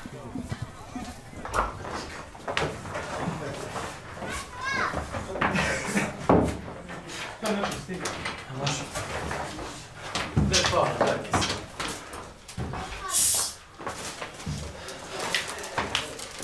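Scattered, overlapping chatter from several people, with knocks and clatter of footsteps and gear, and a short high hiss about 13 seconds in.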